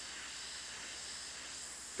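Airbrush spraying paint onto canvas: a steady, even hiss of air and paint from the nozzle.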